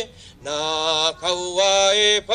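A man chanting solo into a microphone in long, held notes, with a short pause for breath just after the start and another brief break about a second in.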